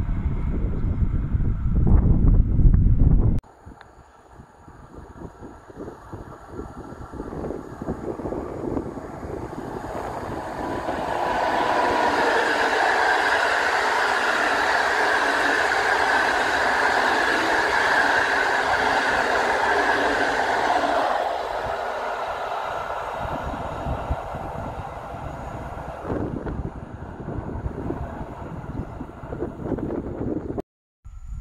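An Intercity passenger train of coaches running past on an electrified line. The steady rolling noise of wheels on rail builds over several seconds, stays loud for about ten seconds as the coaches go by, then fades as the train recedes. Wind rumbles on the microphone at the start and cuts off abruptly.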